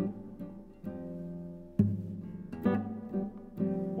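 Classical guitar with nylon strings, played fingerstyle: a bluesy jazz groove of plucked chords, one left ringing for about a second, followed by a strong low bass note and more chords.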